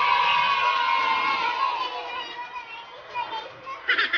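A busy mix of raised voices and music, loud at first and fading away about halfway through.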